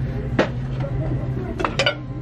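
Ceramic dishes and glassware clinking against each other as items are handled on a store shelf: one sharp clink about half a second in and two quick ones near the end, over a steady low hum.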